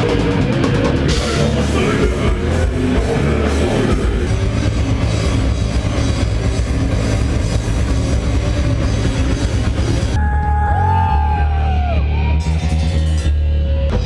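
Heavy metal band playing loud: distorted electric guitars, bass guitar and drum kit. About ten seconds in the cymbals drop out for a few seconds while a guitar plays sliding, bending notes over the low end, then the full band comes back in.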